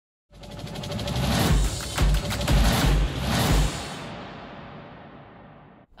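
Short broadcast transition sting: a swelling burst of fast pulsing music with a cluster of heavy low hits about a second and a half in, then a tail fading out over about two seconds.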